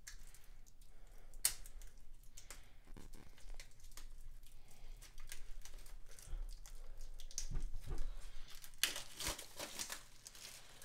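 Plastic shrink wrap on a DVD case being picked at with fingernails and torn open by hand, with scattered small crackles and clicks. Near the end comes a louder run of crinkling and tearing as the wrap is pulled off.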